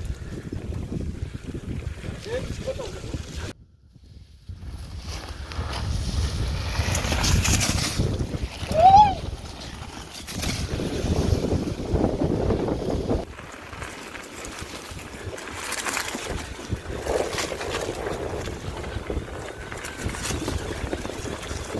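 Mountain bikes rolling over a dry, leaf-covered dirt trail, tyres crunching through fallen leaves, with wind buffeting the microphone. The sound drops out briefly before four seconds, and a short rising-then-falling high note sounds about nine seconds in, the loudest moment.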